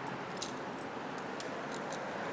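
Metal climbing hardware on an arborist's harness and rope system clinking: about six light, sharp clicks and jingles over a steady background hiss.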